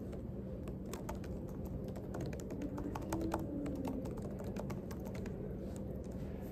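Typing on a laptop keyboard: a quick, irregular run of key clicks over a steady low room hum.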